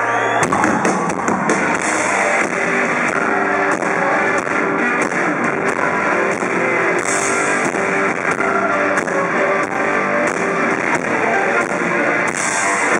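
Live rock band playing an instrumental passage: heavy electric guitars over a steady beat. After a held chord, the full band comes in about half a second in.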